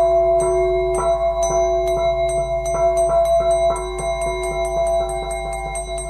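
Short instrumental radio jingle of chiming struck notes, about four a second, over held tones and a low hum. It marks the break between segments of the show.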